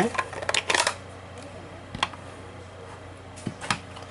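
Light plastic clicks and taps from an ink pad and rubber stamp being handled: a quick cluster in the first second, then single clicks about two seconds in and near the end.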